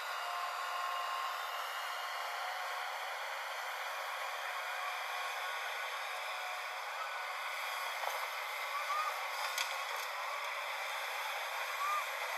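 A JCB tracked excavator working: a steady, thin, hiss-like machine noise with faint steady tones in the first few seconds and a single click about nine and a half seconds in.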